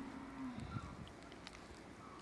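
A cow mooing faintly: one long, low, steady call that dips and ends about half a second in.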